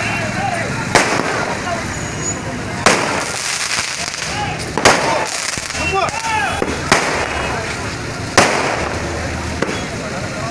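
Firecrackers going off one at a time: five sharp bangs about two seconds apart, with a crowd's voices in between.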